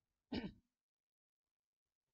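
A man clears his throat once, briefly, into a microphone.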